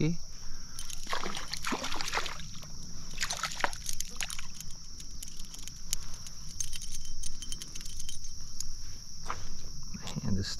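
Water splashing and sloshing from a small hooked brook trout being played and landed in a shallow stream, in bursts mostly over the first few seconds, with a steady high buzz of crickets throughout.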